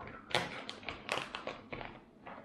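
Foil freeze-dried meal pouch crinkling as it is handled, a run of irregular sharp crackles and taps.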